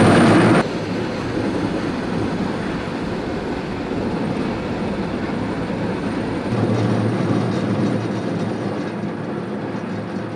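A Cat wheel saw on a compact track loader cutting into concrete, loud and dense, breaking off abruptly about half a second in. After that comes a steadier din of diesel-powered compact track loaders and heavy equipment running, swelling slightly about two-thirds of the way through.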